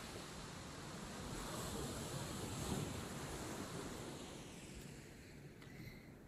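Small waves washing onto a pebble beach: a soft, steady surf that swells about halfway through and fades toward the end.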